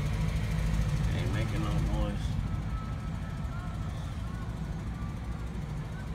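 A 1996 Chevy Impala SS's 5.7-litre (350) LT1 V8 idling steadily, heard at the tailpipe through the stock exhaust and quiet. It gets a little softer after about two seconds.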